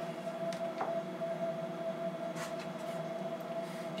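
Steady background hum with a few faint light clicks.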